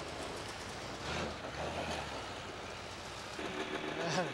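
Snowmobile engine running. A steady engine note comes in about three and a half seconds in, over a noisy background with a brief low rumble about a second in.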